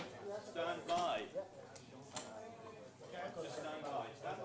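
Men talking indistinctly, in loose, casual chatter.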